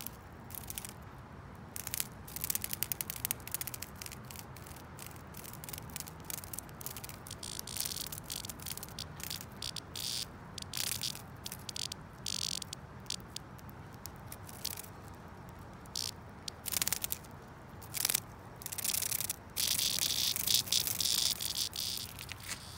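A cicada's distress buzz as it is gripped by an attacking wasp: harsh, high-pitched bursts that come and go irregularly, the longest and loudest near the end.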